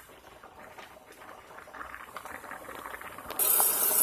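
A pot of angel hair pasta bubbling at a boil, with a few faint clicks as wooden chopsticks stir it. About three and a half seconds in, a kitchen faucet comes on suddenly and water runs loudly into the sink.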